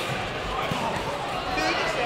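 A few dull thuds of kickboxers' feet and strikes on the padded mats, under scattered voices from around the hall.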